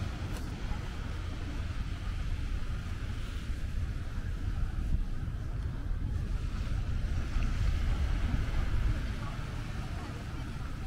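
Wind buffeting the microphone in a gusty low rumble, over the hiss of small waves washing onto a sandy beach. The wind is strongest about seven to nine seconds in.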